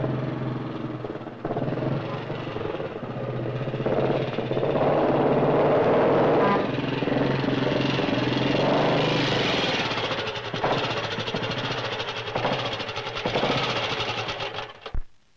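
Motorcycle engine running as the bike is ridden along, swelling louder midway and easing off.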